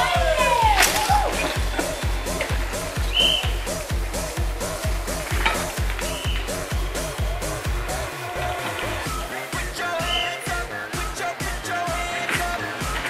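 Electronic dance music with a steady, driving kick-drum beat and a short repeating synth figure, without vocals.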